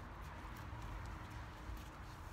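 Small Havanese dogs' claws tapping faintly on a stone step, a few scattered clicks over a low background.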